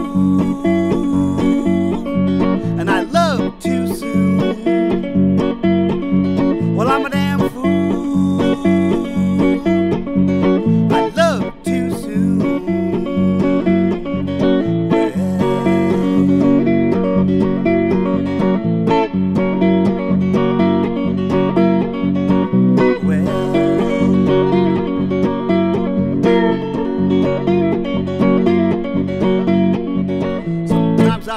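Solo hollow-body archtop guitar played in a steady, evenly picked rhythm, an instrumental passage without vocals.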